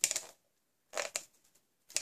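Handheld Fast Fuse adhesive applicator drawn along card stock in three short strokes about a second apart, laying adhesive on the card ends.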